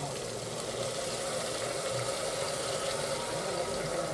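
Chopped tomatoes, onions and ginger-garlic paste sizzling steadily in hot oil in a pressure cooker pan.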